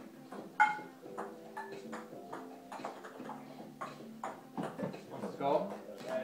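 A table-tennis ball knocked back and forth with metal kitchen pans and bouncing on a wooden table: a run of sharp clacks and ticks at irregular intervals, the loudest about half a second in, with a brief metallic ring.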